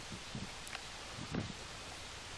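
Faint outdoor ambience with a steady hiss. Two soft low bumps come about half a second and a second and a half in.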